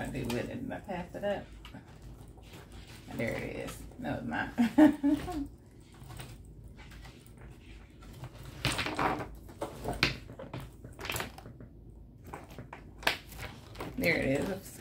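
A person's voice in short, quiet spoken bursts with pauses between them.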